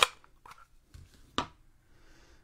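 Two sharp clicks, one at the start and another about a second and a half in, with a faint tap between them: stamping supplies such as a stamp, block or ink pad being handled and set down on a craft desk.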